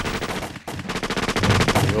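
Rapid machine-gun fire, shots coming fast and close together from a belt-fed machine gun, with a brief break a little over half a second in.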